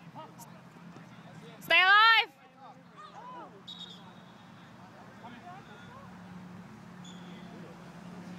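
A player's loud shout near the microphone about two seconds in, half a second long, its pitch rising then falling, over faint calls from players across the field.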